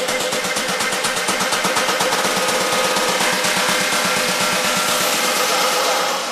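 Electronic dance music in a build-up: the kick and bass drop out while a rapid roll of percussion hits runs over a rising noise sweep and a held synth note.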